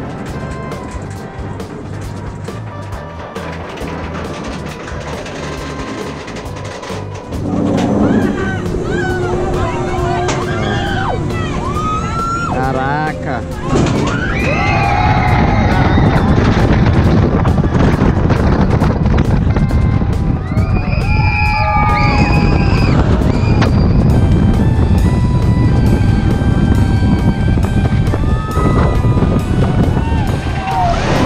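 Background music with a steady beat over a SheiKra dive coaster ride. About halfway through, the level jumps as a rush of wind and track roar comes in, with riders screaming.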